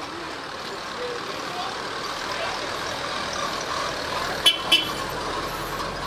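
Steady outdoor street noise of road traffic, with a vehicle horn giving two quick toots about four and a half seconds in.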